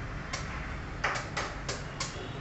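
Five short, sharp clicks or taps, one early and four close together in the second half, over a steady low background rumble.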